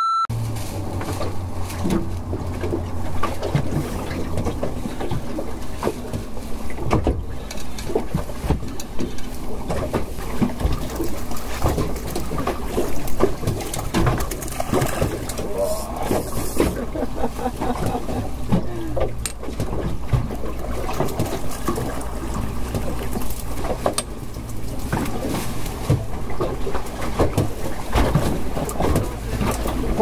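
Wind and water noise aboard a small fishing boat on choppy water, with a steady low rumble and scattered knocks and clatter from gear on deck.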